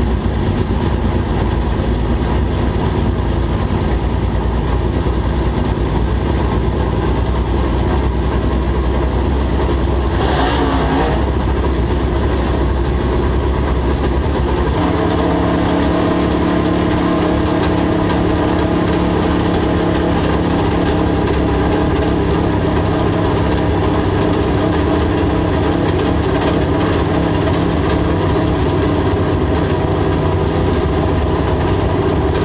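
Dirt late model race car's V8 engine running steadily, heard on the in-car camera. There is a brief rush of noise about ten seconds in, and the engine note changes about fifteen seconds in.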